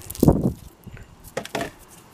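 Echeveria flower stalks being snapped off by hand: a brief crack just after the start and another about a second and a half in.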